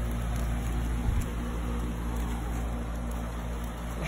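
Outdoor air-conditioner unit running with a steady hum, with a single short bump about a second in.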